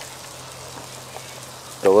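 Wood fire burning in a metal fire basket, with waste engine oil thinned by gasoline burning in it: a soft steady hiss with a few small crackles.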